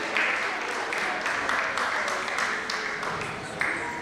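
Audience applause with some crowd voices mixed in, easing off near the end.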